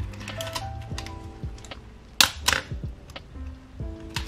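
Small metallic clicks and taps from fingers working the exposed film-advance gears and levers of an Olympus OM10 camera, with two sharper clicks about halfway through, over soft background music with held notes.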